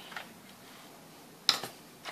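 Small handling noises on an opened plastic radio-control transmitter case being worked with a screwdriver: a faint tick early on, then one sharp click about one and a half seconds in.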